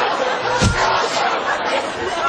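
Several people talking and shouting over one another, with a low thump about two-thirds of a second in.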